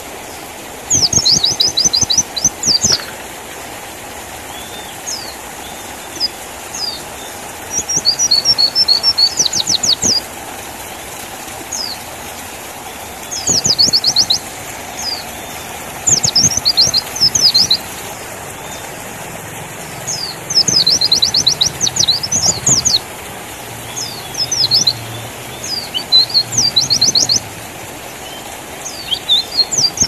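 White-eye (pleci) singing: about eight bouts, each a second or two long, of rapid, high, sweeping chirps, over a steady background hiss.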